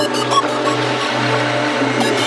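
Neurofunk drum-and-bass music: a heavy, steady bass tone under dense electronic synth textures.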